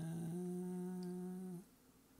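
A man humming one steady, held note for about a second and a half, which stops shortly before the end, as he searches for a file.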